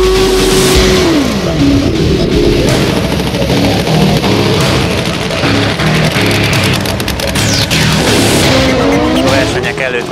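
Drag bike engine held at high revs as one steady tone during a smoky tyre burnout, dropping off about a second in, with music playing underneath; more engine revs rise and fall near the end.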